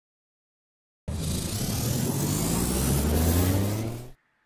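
Sci-fi machine power-up sound effect: starting suddenly about a second in, a loud rumbling whine rises in pitch for about three seconds, then cuts off.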